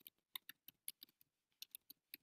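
Computer keyboard being typed on: about ten faint, quick key clicks at an uneven pace.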